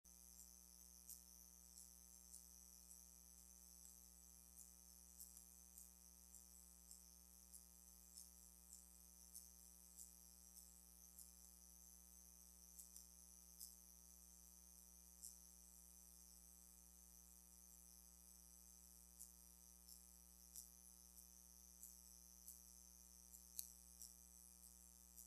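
Near silence: a faint steady electrical hum with a high hiss and small irregular crackling ticks.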